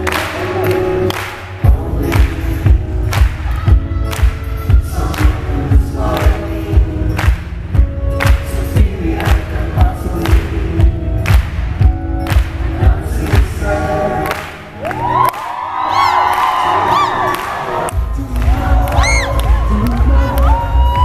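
Live acoustic guitar music with a steady thumping beat about twice a second. About fourteen seconds in the beat drops out and the crowd cheers and whistles, then the beat comes back near the end.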